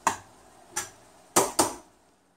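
Metal kitchen tongs clinking against a stainless steel skillet while tossing greens: four sharp clicks, the last two close together about one and a half seconds in.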